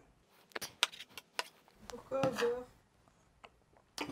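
Chef's knife slicing button mushrooms on a wooden cutting board: a quick run of sharp taps as the blade meets the board in the first second and a half, then a few scattered taps. A brief pitched sound comes a little past two seconds in.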